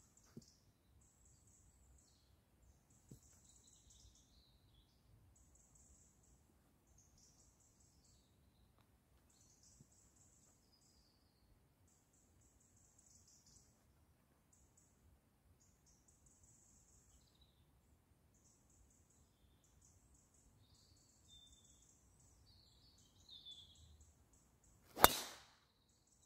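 Faint high-pitched chirping in the background, then about 25 seconds in a single sharp crack of a driver striking a golf ball off the tee: a well-struck drive.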